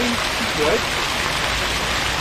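Fountain jets splashing steadily into a stone pool: a continuous, even rush of falling water.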